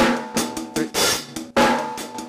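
Drum kit playing a rock groove: sixteenth notes on the hi-hat with snare and bass drum under them, the hi-hat struck with Moeller (shank-tip) strokes. About a second in, the hi-hat is opened on the "e" of beat three and washes out before closing.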